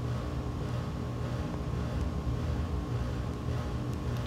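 Steady low background hum made of several constant tones, with a faint hiss over it.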